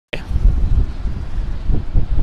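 Gusting wind buffeting the microphone: a loud, uneven low rumble, as the wind picks up ahead of an incoming squall. The sound cuts out completely for a split second at the very start.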